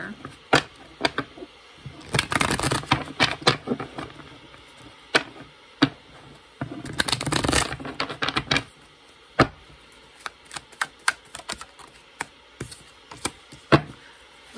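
A tarot deck being shuffled by hand: two bursts of rapid card flutter, about two and seven seconds in, then scattered single clicks and taps of the cards, with a card laid on the table right at the end.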